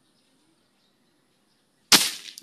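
A single sharp shot from a Nimrod airgun converted from CO2 to PCP (pre-charged pneumatic), coming near the end after near-quiet, with a brief tail that fades over about half a second.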